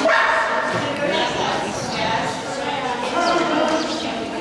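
A dog barking while running an agility course in a large indoor arena.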